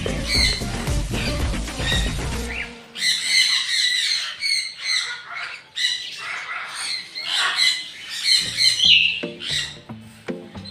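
Parrots squawking and screeching in short repeated calls. Music sits under them for the first few seconds and cuts out suddenly about three seconds in.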